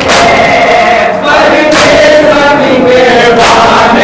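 Men chanting a Muharram noha together, with the group's chest-beating (matam) strikes landing in unison about every 1.7 seconds.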